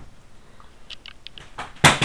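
Handling noise on a handheld kid's toy video camera: a few light clicks, then one sharp, loud knock near the end.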